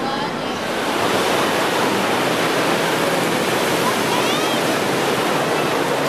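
Steady rush of wave-pool surf washing in over the shallows, with the voices of a crowd of swimmers beneath it.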